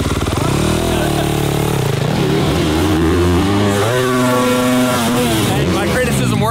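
Motocross bike engine revving through a jump section, its pitch climbing and wavering, then holding steady for about a second before falling away near the end.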